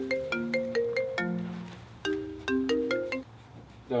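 Smartphone ringtone: a repeating melody of short notes that plays in two phrases and stops a little after three seconds in, when the call is answered.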